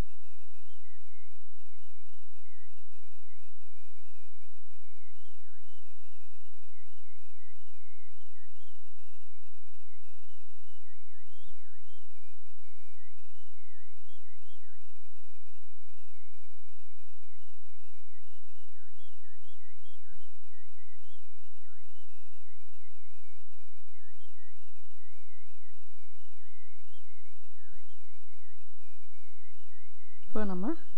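A single thin, high tone that wavers quickly up and down in pitch, steady in level throughout, with no stitching clicks or motor rhythm heard.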